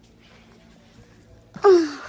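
A short, loud vocal cry near the end that falls in pitch, like a wail or moan.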